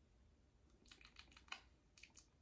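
Near silence: room tone, with a few faint short clicks about a second in.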